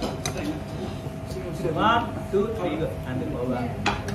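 Metal spoons clinking a few times against plates and a glass cup while people eat, with low table chatter and a short laugh about two seconds in.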